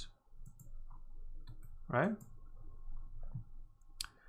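A few scattered light computer mouse clicks.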